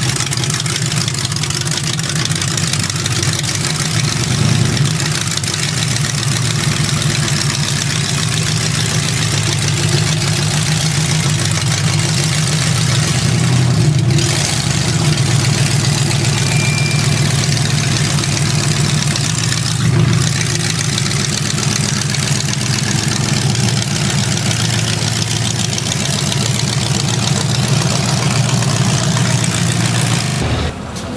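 Austin-bodied gasser hot rod's engine idling loudly and steadily, with a few small rises in revs.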